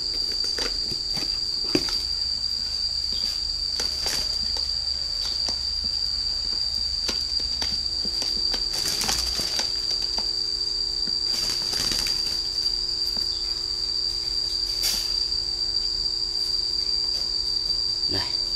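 A steady, high-pitched insect drone runs throughout, with scattered short clicks and rustles from the wire bird cage and cardboard boxes being handled.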